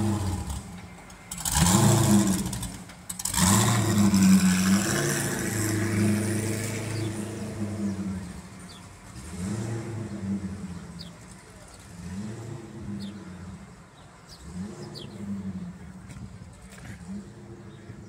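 Motor vehicle engines revving and accelerating, with two loud surges in the first five seconds, then running on more quietly and fading away.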